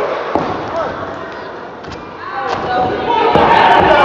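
Heavy thuds of bodies hitting a wrestling ring's mat, a few times, over a small crowd shouting and cheering. The crowd dips midway and swells again near the end.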